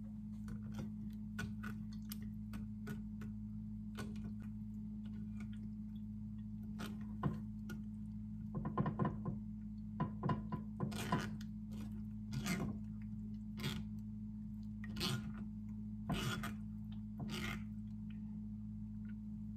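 A silicone spatula and glass blender jug knocking and scraping against a metal mesh sieve as a thick blended mix is pushed through into a glass saucepan: scattered light clicks and taps, sparse at first and busier from about seven seconds in, over a steady low hum.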